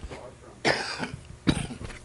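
A man coughing: two coughs about a second apart, after a short one at the start.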